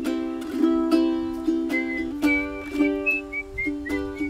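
Ukulele strummed in a steady rhythm. About two seconds in, a short whistled melody of quick high notes plays over the chords.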